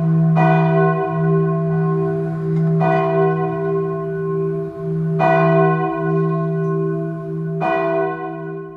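A bell tolling, struck four times about two and a half seconds apart, each strike ringing on over a steady low drone.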